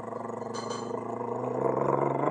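A man's vocal drum roll: a rolled, fluttering "brrrr" held on one low pitch. It builds louder and edges up in pitch toward the end, as a build-up to a reveal.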